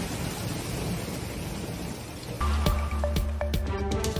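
Hail falling as a steady, even hiss. About two and a half seconds in, it cuts to a news music sting with a deep bass note and ringing pitched tones.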